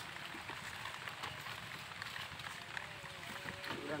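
Steady background hiss with scattered small crackles; a voice starts speaking near the end.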